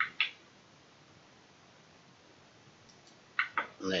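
A computer mouse button clicked at the start, two quick ticks close together, clicking the push-to-talk button, then near silence.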